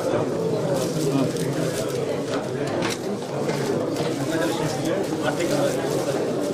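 Many people talking at once in a room, a steady murmur of overlapping voices, with scattered short clicks and rustles.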